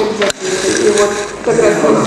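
Voices of people talking in conversation, indistinct.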